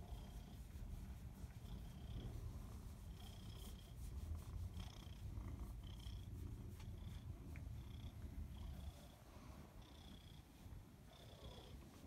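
Long-haired tabby cat purring steadily while being stroked. The purr weakens about nine seconds in.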